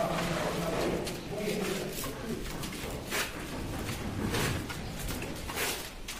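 Indistinct voices of people talking in the background, with occasional short knocks scattered through.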